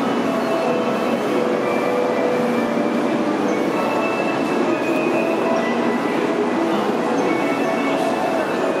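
Busy Shinkansen station platform ambience: a steady wash of crowd noise from passengers walking and talking beside a stationary N700-series train, with no distinct single event.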